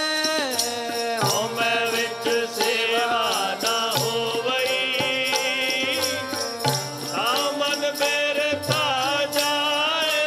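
Sikh keertan: a man sings Gurbani hymns over a steady harmonium drone, with percussion keeping an even beat.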